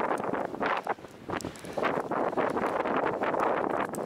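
Wind buffeting the microphone, mixed with rustling, coming in irregular gusts with a brief dip about a second in.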